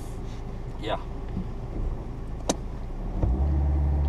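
Car engine idling, heard from inside the cabin, with one sharp click about halfway through. Near the end the engine gets louder and its note rises as the car pulls away.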